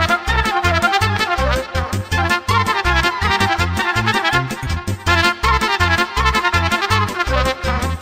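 Moldovan folk dance music: a trumpet plays a fast, ornamented melody over a keyboard accompaniment with a steady bass beat.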